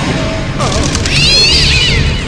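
Domestic cat meowing: one long, wavering meow starting about a second in, rising and then falling in pitch, over background music.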